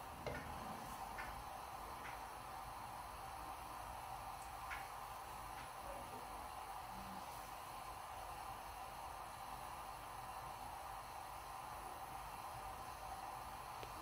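Faint steady hiss of a lit gas hob burner heating a frying pan with a flatbread cooking in it, with a few light ticks in the first few seconds.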